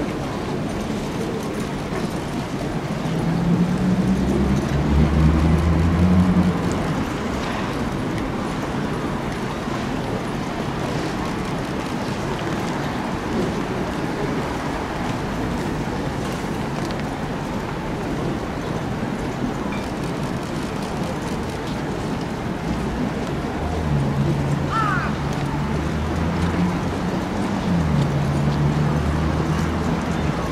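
Steady outdoor background noise around a racecourse paddock, with a low hum that swells twice: about three to seven seconds in and again over the last six seconds.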